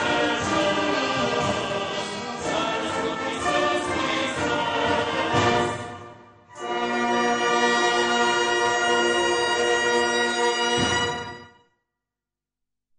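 Brass band playing, then pausing briefly about six seconds in and closing on a long held final chord that is cut off sharply near the end.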